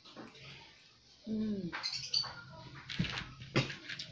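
Close-up eating sounds at a table: sharp clicks and smacks from food, fingers and plates, scattered through the second half. Just over a second in there is a short pitched sound that falls in pitch.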